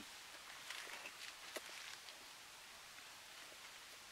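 Near-quiet outdoor stillness with a few faint rustles and small clicks in the first two seconds, then only a low steady hiss.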